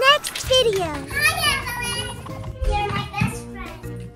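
A child's voice, with light background music underneath.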